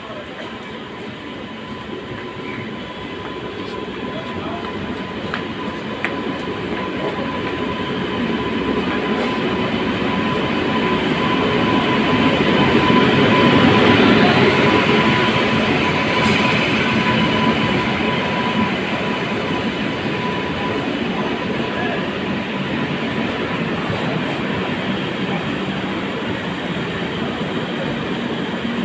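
Electric-locomotive-hauled express train arriving at a station platform at slow speed. Its rumble builds steadily to its loudest as the locomotive passes about halfway through, then the coaches' wheels keep rolling past at an even level, with a steady thin whine running throughout.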